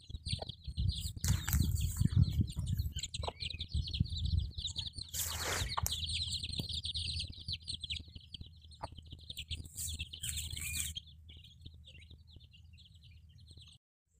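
A brood of chicks peeping continuously in a dense, high chatter around their mother hen, over a low rumble. The chatter thins and grows quieter over the last few seconds.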